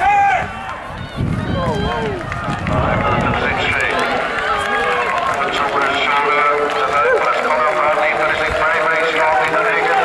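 Spectators at an athletics track shouting and cheering runners on toward the finish of a 1500 m race. A single loud shout comes at the start, then from about three seconds in many voices build into a steady, loud din.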